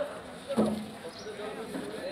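A person's voice calls out briefly about half a second in, over low chatter of several people talking.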